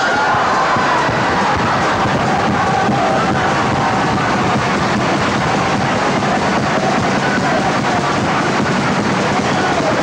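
Live music from a Cádiz-style carnival chirigota group on stage, steady and loud, under a dense wash of crowd noise.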